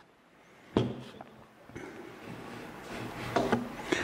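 Putty knife scraping and spreading sandable wood filler along the seam of two pine boards, with a sharp knock about a second in.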